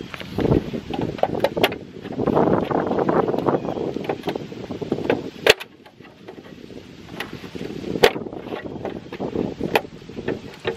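Wind buffeting the microphone, with sharp plastic clicks and knocks as hands grip and pry at a Tesla Model 3 aero wheel cover. The loudest snaps come about five and a half and eight seconds in.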